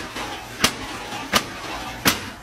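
Repeated sharp bangs at a door, evenly spaced about 0.7 seconds apart, two falling within these seconds.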